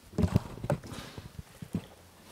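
Podium gooseneck microphone being handled and adjusted, picked up as a short irregular series of knocks and bumps, the loudest in the first half second.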